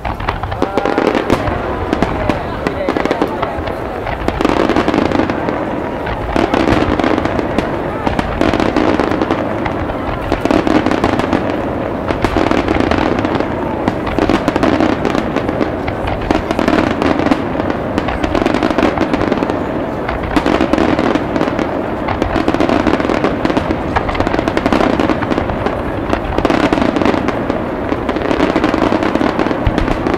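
Aerial firework shells bursting in a dense, continuous barrage: many overlapping booms and crackles that swell and ease every couple of seconds.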